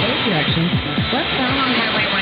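Long-distance AM radio reception of KVNS on 1700 kHz: the station's programme audio faint under a steady hiss of static, with tones that slide quickly down in pitch.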